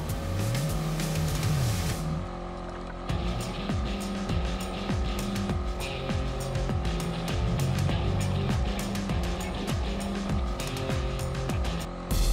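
Background music over a Polaris RZR 900 Trail side-by-side's twin-cylinder engine running on a gravel trail, its pitch rising and falling with the throttle near the start.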